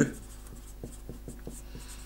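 Felt-tip marker writing on a sheet: a quick run of short, faint strokes as an equation is written out.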